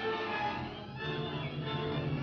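Orchestral film score playing, with several held notes shifting over a steady low bass note.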